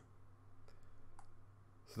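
Two faint computer mouse clicks about half a second apart, over a low steady hum.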